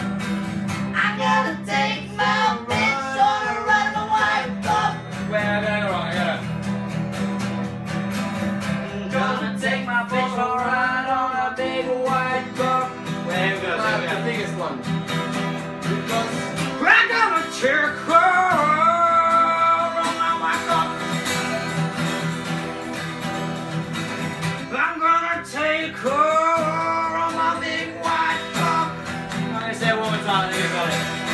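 Acoustic guitar music, with a melody line that bends and slides in pitch in several phrases over a steady strummed accompaniment.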